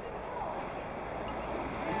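Steady outdoor background noise with a faint, distant voice about half a second in; a man starts speaking at the very end.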